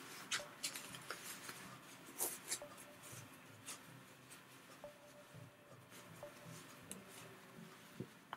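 Faint rustling of fabric in the hands, with scattered soft clicks and scratches, as a sewn fabric piece is pulled through and turned right side out.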